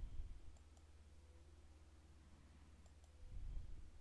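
Faint computer mouse clicks, a pair about half a second in and another pair near three seconds, with soft low rumbles at the start and near the end; otherwise near silence.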